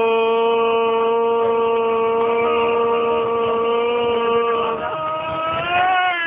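One long 'ooooh' held on a single note by a shouting voice, cheering on a man downing a bottle of wine in one go; the note wavers and rises near the end.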